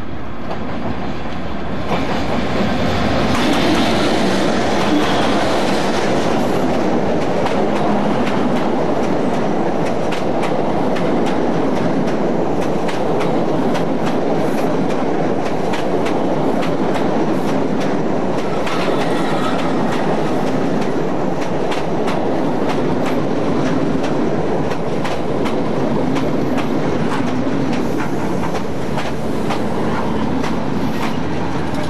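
Irish Rail 201 class diesel locomotive passing at speed with a train of InterCity coaches. The locomotive goes by and the sound swells about two seconds in, then the coaches follow in a long, steady rush of wheels on rail with rapid clicking over the rail joints.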